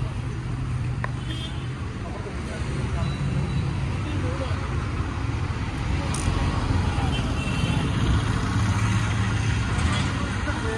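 Steady street traffic and engine noise with a low hum, and indistinct voices in the background. A single sharp click about a second in.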